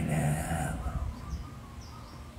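A man's voice ends a word, then a pause in which a few faint, short bird chirps sound over a low steady background.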